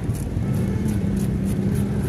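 Rapid scraping strokes of a hand scaler rasping the scales off a rohu fish on a wooden block, about three strokes a second, over a loud steady low drone.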